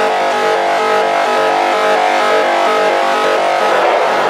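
Techno DJ mix in a breakdown: held synthesizer chords with no kick drum, which blur into a noisy wash near the end.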